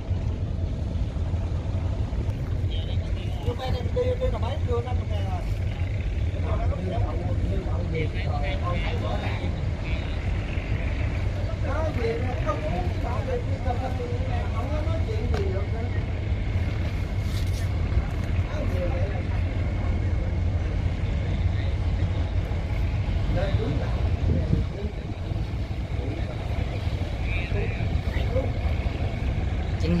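Steady low drone of a wooden fishing boat's diesel engine as it motors past close by, with people's voices in the background.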